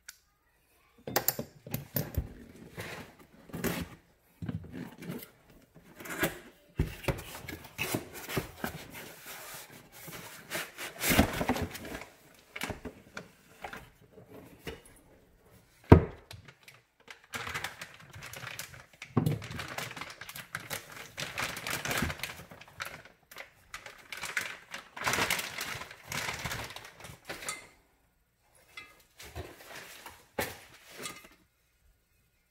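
Plastic packaging rustling and crinkling as an oil cooler kit is unwrapped by hand on a workbench, mixed with irregular clicks and knocks of metal fittings and brackets being handled and set down. One sharp knock about halfway through is the loudest sound.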